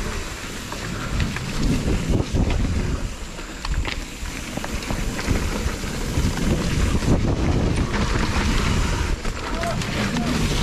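Mountain bike riding down a dirt singletrack: tyres rolling over dirt and roots with the bike rattling and knocking over bumps, and wind buffeting the handlebar-mounted microphone.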